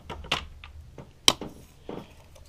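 Scattered clicks and knocks of hands handling loosened clamps and intake parts in a car's engine bay, with one sharp click about a second and a quarter in.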